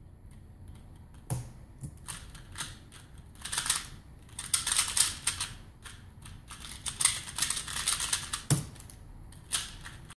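Bursts of fast plastic clicking from a QiYi Wuxia 2x2 speedcube being turned at speed, with a thump about a second in and a louder one near the end.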